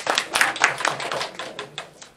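Small audience applauding: a quick, irregular patter of sharp claps that thins out and fades toward the end.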